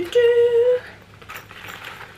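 A woman humming one short, level note, about half a second long, then faint rustles as she handles a nylon shoulder bag.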